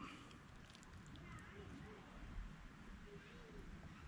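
Near silence: faint outdoor background with a few faint, short calls spread through it.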